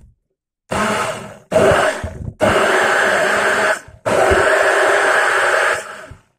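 Immersion blender running in four bursts of one to two seconds with short pauses between them, its blade whipping sunflower oil and pea brine into a thickening emulsion for mayonnaise.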